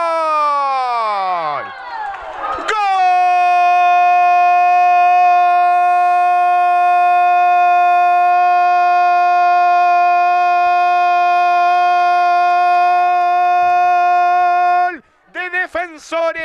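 A male commentator's long, shouted goal cry ("¡Gol!"): the voice falls in pitch over the first couple of seconds. It is then held on one steady note for about twelve seconds and stops abruptly near the end.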